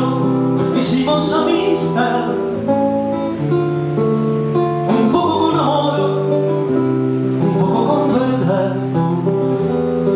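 Solo acoustic guitar playing an instrumental passage between sung verses, with strummed and plucked chords that ring on between strokes.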